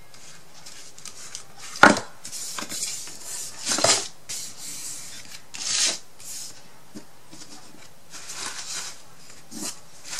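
Hands rubbing and pressing a paper-covered insert down into a laser-cut MDF wood frame: repeated dry rubbing and scraping swishes of skin and paper on wood. A single sharp knock about two seconds in is the loudest sound.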